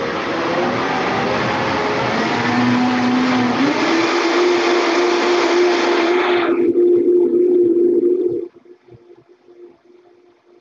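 Countertop blender running, puréeing a thick carrot soup mixture, its motor tone stepping up in pitch about three and a half seconds in. The sound thins about two-thirds of the way through and then stops suddenly near the end.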